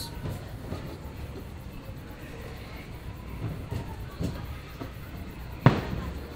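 Steam-train passenger car rolling along the track: a steady low rumble of wheels on rails, with one sharp knock near the end.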